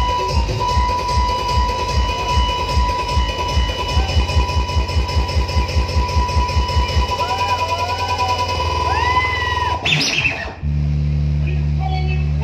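Desi dhamal DJ remix music. A fast, even kick-drum beat runs under a held high note, then drops out about seven seconds in. Gliding sounds and a sweep follow, and near the end a new section starts with a heavy, steady bass.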